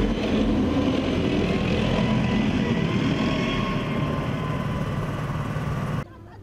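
Armoured military vehicle running close by: a steady, loud engine rumble with road noise and a faint high whine, ending abruptly.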